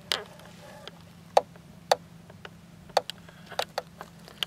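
About ten light, sharp clicks at irregular intervals, the loudest a little over a second in, over a faint steady hum.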